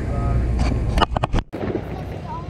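Dirt late model race car engine idling, a low steady hum, with a few sharp clicks about a second in. The sound cuts off abruptly halfway through, leaving a quieter outdoor background.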